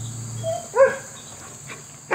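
A dog gives one short yip about a second in, over a steady high drone of insects. A low hum cuts off about half a second in.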